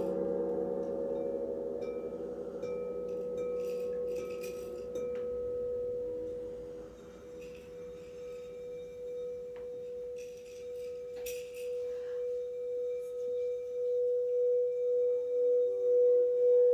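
Quartz crystal singing bowl sounding one steady pure tone that fades and then, from about nine seconds in, swells louder with an even pulsing wobble as its rim is played. A lower, many-toned ring dies away in the first second.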